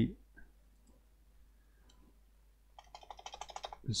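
Faint room tone, then near the end a quick run of computer keyboard clicks lasting about a second, as a number is typed into a value field.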